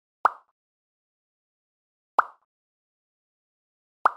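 Two short pop sound effects about two seconds apart, each a quick pop that dies away within a fraction of a second, marking graphics appearing on screen.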